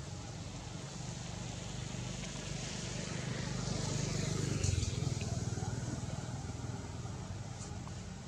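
A steady low hum, with the noise of a passing motor vehicle swelling to its loudest about halfway through and then fading away.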